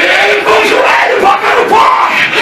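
A man's voice shouting fervently into a handheld microphone, loud and amplified through the church PA, pouring out in one unbroken stream with no recognisable words, typical of ecstatic Pentecostal prayer.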